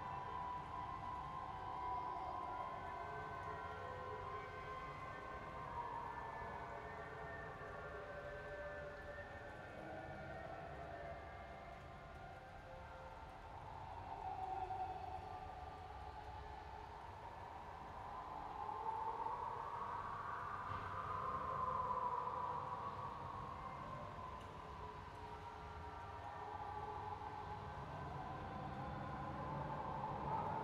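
Spooky ambient drone: sustained layered tones that slowly glide up and down in pitch, swelling and rising to a peak about two-thirds of the way through before sinking again, over a steady low rumble.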